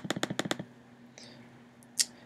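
A quick run of about eight computer mouse clicks in the first half second, repeatedly pressing an on-screen arrow button, then one more click right at the end.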